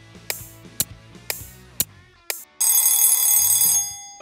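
Countdown-timer sound effect: sharp beats about twice a second over a low music bed, then, a little over halfway through, a loud bell ringing for about a second as the timer reaches zero.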